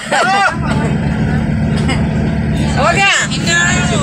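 Passenger van engine and road noise heard from inside the cabin while driving: a steady low hum, with brief voices near the start and about three seconds in.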